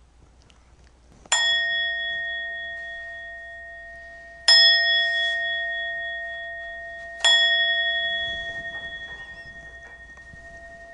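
A bowl bell struck three times, about three seconds apart, each strike ringing on and fading slowly.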